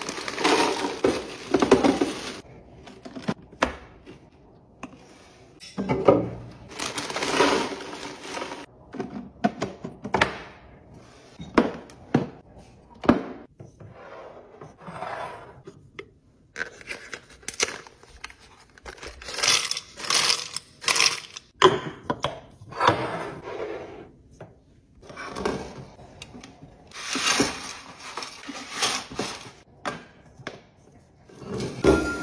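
Vegetable crisps rattling as they are poured from a crinkly bag into a clear storage container, followed by a run of handling sounds: bag rustling, and short knocks and clinks as wooden lids are lifted off and set back on ceramic and glass storage jars.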